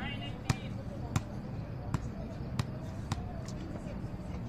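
Volleyball struck by players' hands and arms during passing: a series of five sharp slaps, spaced a little over half a second apart.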